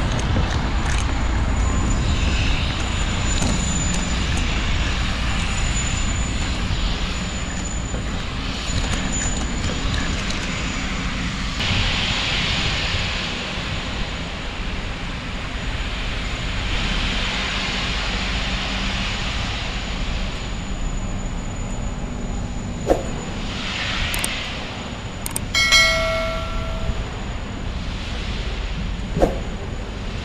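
Dockyard ambience: a steady low rumble of machinery under a faint high whine, with swells of hissing noise every few seconds. A sharp click comes a little before 23 s, and a short pitched tone sounds about 26 s in.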